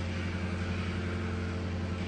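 A steady low hum with a few faint steady tones and no sudden sounds: background room tone.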